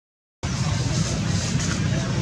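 The sound cuts out completely for a split second, then steady outdoor background noise returns, a low rumble with hiss over it.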